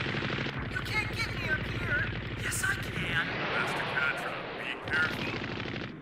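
Anime sound effect of mobile suits' machine guns firing, a continuous rapid stream of automatic gunfire that eases off just before the end.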